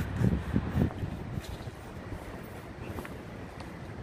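Steady low rumble of street and traffic noise, with a few soft knocks and rustles of handling in the first second.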